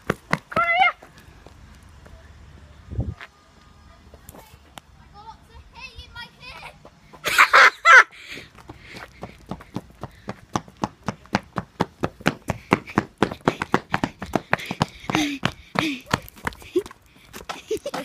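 Running footsteps on pavement, quick regular strikes about three to four a second, with a loud burst about seven seconds in and a few short vocal sounds.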